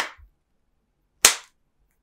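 Clear OtterBox Symmetry plastic case snapping onto the edges of a Google Pixel 6 Pro: two sharp clicks about a second and a quarter apart, the second louder.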